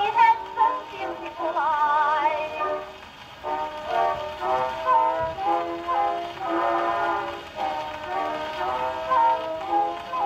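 An early acoustic 78 rpm shellac record played through an acoustic gramophone's reproducer and tone arm: a woman singing with vibrato over a small orchestra. The sound is thin and narrow, with no deep bass and little treble.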